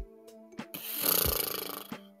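A person blowing out a long breath through pursed lips, a deflated "pfff" lasting about a second that starts just under a second in, over soft background guitar music.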